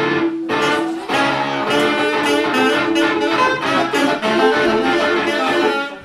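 A small live band, saxophone and acoustic guitar to the fore, launching into a song straight off a count-in and breaking off suddenly near the end, a false start with audible bum notes (couacs).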